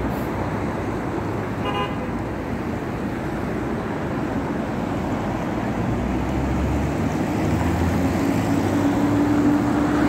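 City street traffic: a steady hum of passing cars, with one short car-horn toot about two seconds in. From about six seconds a nearby heavy vehicle's engine grows louder, a steady low drone.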